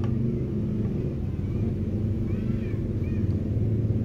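A steady low hum of a running engine or motor, with a faint short chirp a little past halfway.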